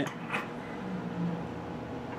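Steel firebox door of a Hitzer 710 coal stoker furnace being unlatched and swung open: a short metal click about a third of a second in, over the steady hum of the stoker's fans running.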